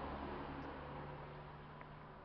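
Faint background room tone: a steady low hum under quiet noise, with one small tick near the end.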